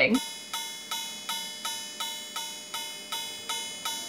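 A clock striking midnight: one ringing chime note struck about a dozen times in even succession, about three strikes a second, each fading before the next.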